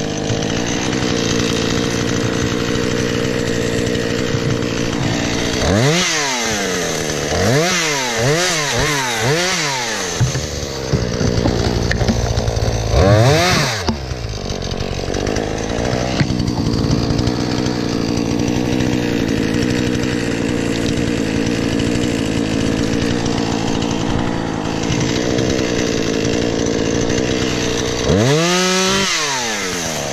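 Husqvarna two-stroke chainsaw running throughout, mostly held at high revs while cutting thin saplings and brush. The throttle is blipped up and down several times in quick succession about a quarter of the way in, once more near the middle, and the revs drop and climb again near the end.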